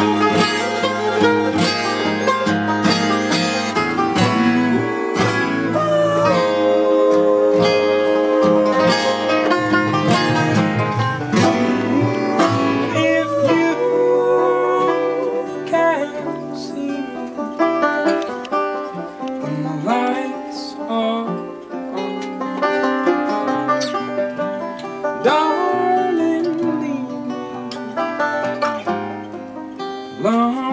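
Acoustic folk band playing an instrumental passage: a strummed acoustic guitar and a picked banjo, with a sustained melody line above that slides between notes.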